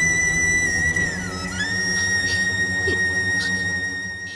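Dramatic background music: a sustained high, whistle-like tone held over a low drone, dipping in pitch a little after a second in and gliding back up.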